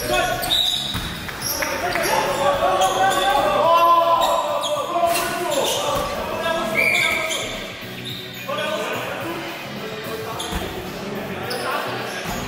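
A basketball bouncing on a hardwood gym floor, with players' shouts and calls echoing around the hall.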